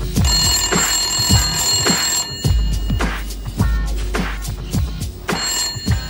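Telephone ringing over a hip-hop beat with bass thumps: one long ring starting just after the beginning and a second ring starting near the end.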